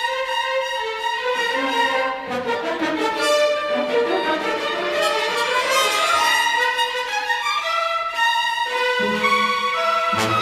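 Symphony orchestra playing a live concert performance, with several overlapping melodic lines in the middle and upper range. Lower parts come in about a second before the end.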